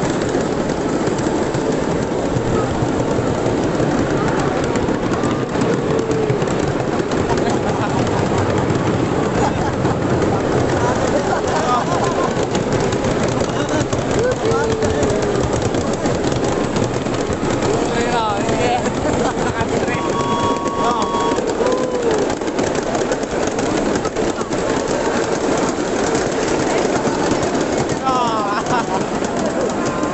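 Small open mini-train car running along narrow rails: a steady, loud rolling rumble and clatter of its wheels on the track.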